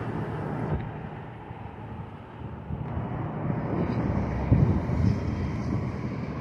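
Low rumble of street traffic mixed with wind buffeting the phone's microphone, swelling between about three and five seconds in.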